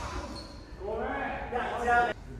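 Players' voices calling out and chatting in a large, echoing school gymnasium during a break in volleyball play, louder from about a second in.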